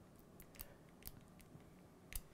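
Faint short scrapes and ticks of a marker tip on a glass lightboard as letters are written, a handful of brief strokes over near-silent room tone.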